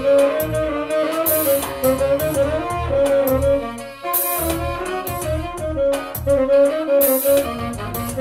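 Saxophone playing a sustained melody over a backing track with bass and drums, a cymbal crash about every three seconds.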